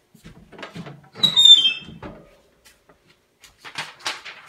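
Light clattering with a short, loud squeak that falls in pitch about a second in, then a brief rustle near the end.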